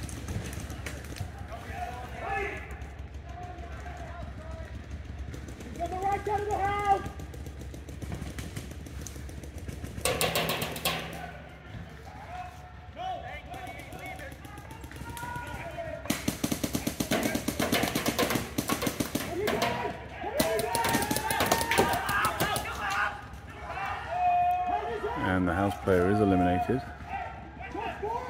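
Paintball markers firing rapid strings of shots, heaviest from the middle of the stretch onward, with players' voices calling out across the field.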